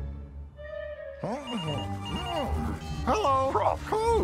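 Mobile phone ringing with short repeated electronic tones, over cartoon background music.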